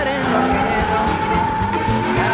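Background music with a beat, over a pickup truck's tyres squealing in one long, steady squeal as it slides sideways.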